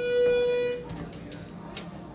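A Schindler HT elevator's electronic signal: one steady beep lasting about a second, then cutting off.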